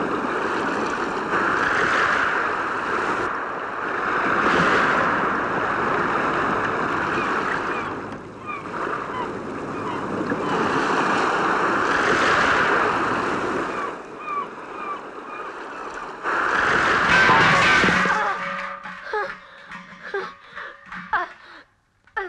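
Rough sea surf crashing and washing over rocks, rising and falling in repeated loud swells. Near the end the surf gives way to shorter, separate sounds.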